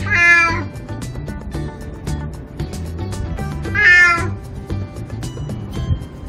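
Elderly calico domestic cat meowing twice, two short calls about half a second long, one at the very start and one about four seconds later.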